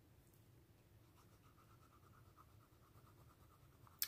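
Faint, quick scratching of a small tool rubbed back and forth over a rub-on transfer sticker on a paper planner page, pressing the design onto the paper. It starts about a second in and repeats at about eight strokes a second.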